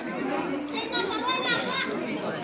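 Several people talking at once, their voices overlapping in chatter.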